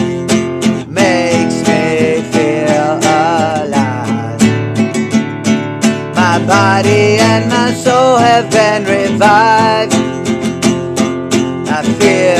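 Classical guitar strummed in a steady rhythm, with a man singing along over it.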